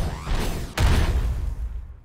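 Cartoon action sound effects with a musical sting: sweeping whooshes, then a heavy low impact about three quarters of a second in that fades out over the next second.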